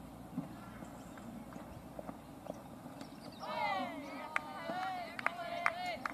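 Players calling out on the field in high-pitched voices, starting about three seconds in, with falling and wavering shouts and a few sharp claps among them.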